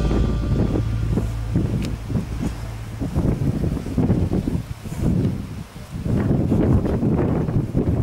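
Wind buffeting the camera microphone in uneven low rumbling gusts. A low steady hum lingers for the first few seconds and then fades.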